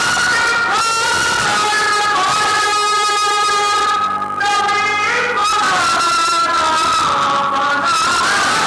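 Devotional singing with harmonium accompaniment: a voice holds long notes that bend and glide over steady held harmonium tones, loud and even, with a brief break near the middle.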